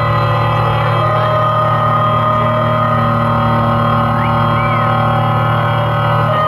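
Synthesizer drone through a festival PA: one sustained, unchanging chord with a strong deep note underneath, held as a song's intro. There is a short whistle over it about four and a half seconds in.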